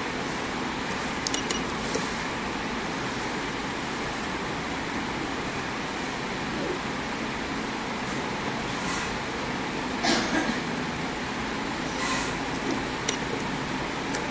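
Steady background noise with a few short clicks, a couple about a second in and louder ones about ten and twelve seconds in.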